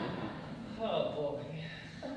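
Speech: a short spoken line or vocal exclamation about a second in, its pitch falling, picked up by a stage microphone in a concert hall.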